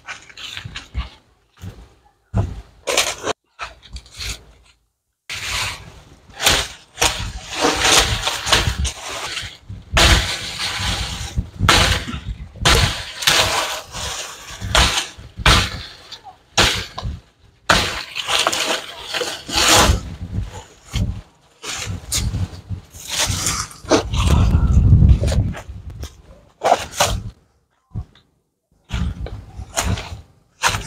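A machete chopping and snapping dry branches in undergrowth, with the crackle and rustle of dry leaves and twigs being broken and trampled. Irregular sharp cracks and rustling come in clusters, with short pauses near the start and near the end.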